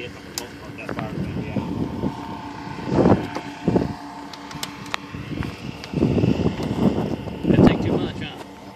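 Indistinct, muffled talk from people nearby over a steady engine hum, with some wind on the microphone.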